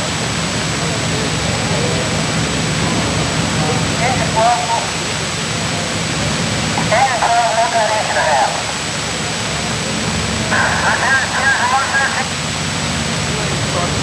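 Steady rumble and hiss of fire engines running at a fire scene. Indistinct voices break in three times, at about four, seven and eleven seconds in.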